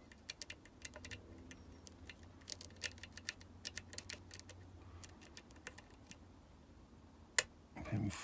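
Lock pick working the pin stack of a 5-pin Medeco high-security cylinder under tension: a run of small, light metallic clicks as the pins are lifted and set to the shear line, busiest in the middle, with one sharper click near the end.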